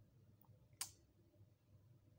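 Near silence with one short, sharp click a little under a second in.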